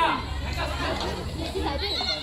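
Several high-pitched voices chattering and calling out over one another, with no single clear speaker, over a low steady rumble.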